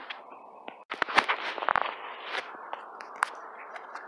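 Handling noise from a handheld phone: rustling with scattered sharp clicks and knocks, broken by a brief drop-out about a second in.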